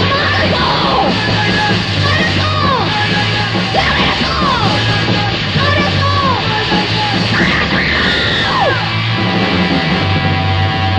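Raw cassette rehearsal recording of a fast early-'80s hardcore punk band: guitar, bass and drums with yelled vocals. The shouting stops near the end while the band plays on.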